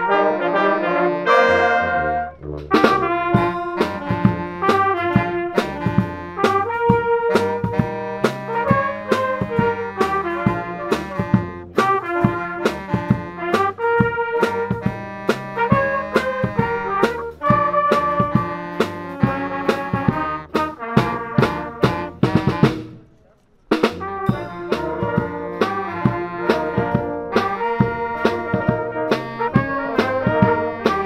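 A brass band of trumpets, trombones, saxophones and tuba playing an upbeat tune over a drum kit keeping a steady beat. The music breaks off briefly about 23 seconds in, then the band comes back in.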